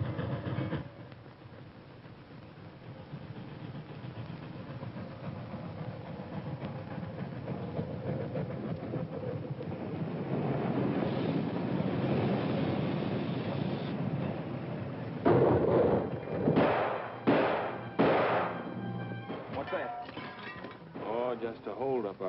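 Film soundtrack of a steam train running, its rumble growing louder, then four loud sharp bangs in quick succession about fifteen to eighteen seconds in.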